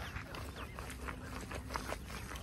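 A hand hoe scraping and knocking lightly in wet, grassy soil, a series of short soft strokes. Short high chirps sound faintly in the background.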